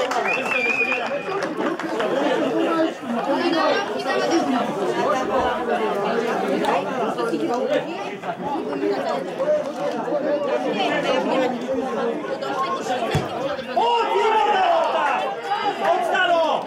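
Overlapping chatter of many voices talking and calling out at once, from players and spectators around the pitch, with no single clear speaker. A brief high steady tone sounds just after the start.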